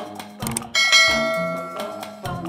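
Background music with a steady beat, and a bright bell chime a little under a second in that rings out and fades. The chime is the notification-bell sound effect of a subscribe-button animation.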